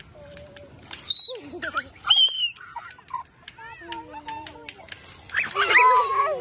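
Young children's voices: high-pitched squeals, calls and chatter that grow louder and overlap near the end, with scattered light clicks.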